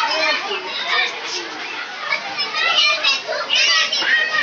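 Many children's voices talking and calling out at once, high-pitched and overlapping, with one louder shout near the end.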